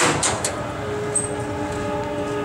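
A train horn sounding one long, steady chord that starts just under a second in, after a few short knocks at the start.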